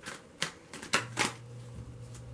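Tarot cards being shuffled by hand, with a few crisp card snaps about half a second apart.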